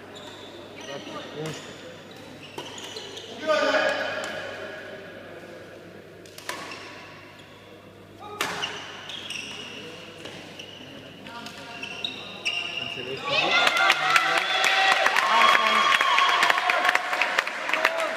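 Badminton rally in a large hall: sharp racket strikes on the shuttlecock and shoe squeaks on the court floor, with echo. About thirteen seconds in, the point ends and spectators applaud and call out.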